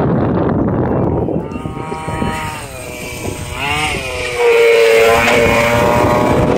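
Losi DBXL 1/5-scale RC buggy's engine being throttled, its note rising and falling. It dips quieter near the middle, then runs louder and steadier from about four seconds in.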